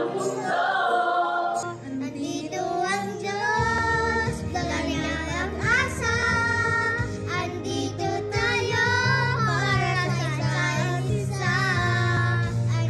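Two young girls and a woman singing a Christmas song over a recorded backing track, with the bass line coming in about two seconds in.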